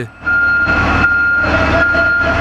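A fire truck's engine running close by, with a steady high-pitched whine held over the rumble. It starts about a quarter second in.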